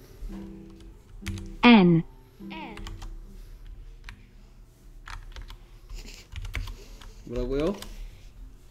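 Typing on a computer keyboard: scattered key clicks, with a short voiced call about two seconds in and another near the end.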